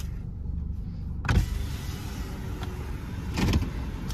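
A car's driver-side power window running down, starting suddenly about a second in, with the car's engine idling steadily underneath.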